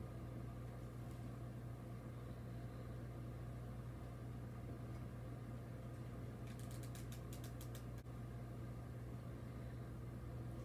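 Steady low hum of room tone. About six and a half seconds in comes a quick run of about a dozen small clicks, from a hot glue gun's trigger being squeezed.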